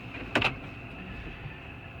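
Steady low hum of a Toyota 4Runner's 4.0-litre V6 idling, heard from inside the cabin, with one short click just under half a second in.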